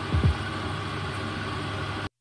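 Meat and sliced onions frying in a pan, a steady sizzle, with a brief low thump just after the start.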